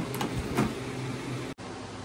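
Steady low mechanical hum, with two short noises in the first second. The sound drops out for an instant about one and a half seconds in.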